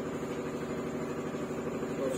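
A machine running with a steady, even hum.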